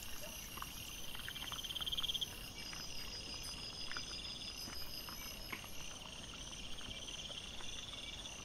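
Night insects, crickets or bush-crickets, chirping in repeated fast-pulsed trills lasting a second or two each, with faint scattered clicks and rustles from wild boar foraging.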